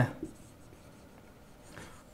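Faint strokes of a marker pen on a whiteboard, with a soft scrape a little before the end.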